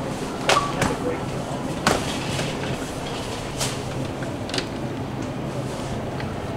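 Supermarket ambience: a steady low hum under scattered sharp clicks and knocks from a shopping cart and glass cooler-case doors being handled.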